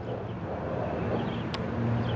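A low steady hum over faint background noise, with a single sharp click about one and a half seconds in.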